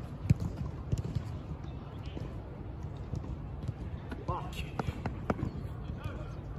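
A football being struck and caught during goalkeeper drills, heard as several sharp thuds, the loudest just after the start, with footsteps on artificial turf and wind on the microphone. A brief call from a voice comes a little after four seconds in.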